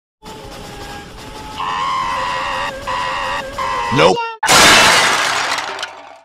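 Glass-shattering sound effect about four and a half seconds in, loud and dying away over about a second and a half. Before it come held, wavering electronic tones and a shouted "No" that swoops in pitch.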